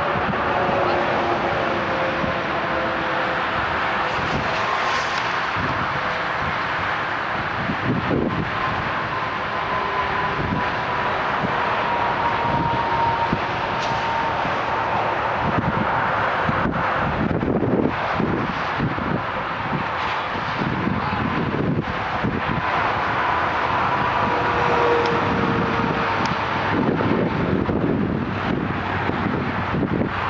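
Outdoor ambience: a steady rushing noise with a faint distant engine drone whose pitch drifts slowly, and faint voices.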